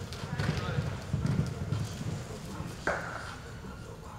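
Horse's hooves thudding dully on the arena dirt. A single sudden sharp sound comes a little under three seconds in.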